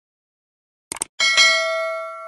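Subscribe-button animation sound effects: a quick double mouse click about a second in, followed at once by a bright bell ding that rings on with several tones and slowly fades, the notification-bell chime.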